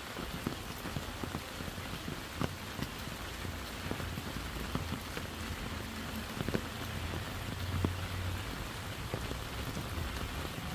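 Steady rain falling on wet leaf litter and foliage, with many separate drop taps standing out from the hiss.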